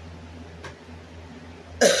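Quiet room tone, then near the end a woman clears her throat, sudden and loud.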